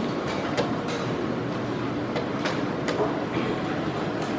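Irregular sharp clicks of wooden chess pieces being set down and chess clock buttons being pressed in blitz games, over a steady background noise of a crowded playing hall.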